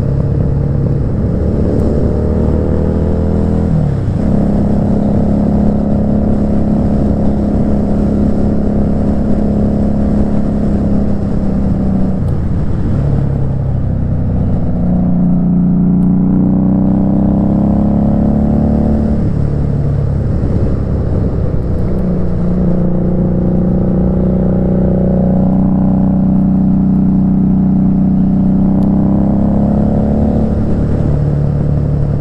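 Motorcycle engine heard from the rider's seat while riding, its pitch climbing as it accelerates and stepping down at gear changes or easing off, several times over, with steady cruising stretches between.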